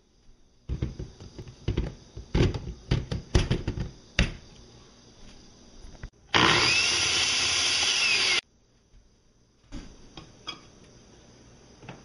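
Several knocks and clatters of a glass blender jar being handled, then a Hamilton Beach 10-speed countertop blender's motor runs loud and steady for about two seconds and cuts off suddenly.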